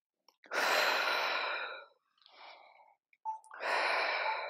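A woman breathing hard through the mouth, out of breath from high-intensity exercise: a long, loud breath about half a second in, a shorter, quieter one in the middle, and another long breath starting near the end.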